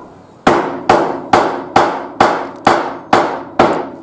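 Hand hammer striking the wooden framing of a window opening, eight even blows at about two a second, each ringing briefly.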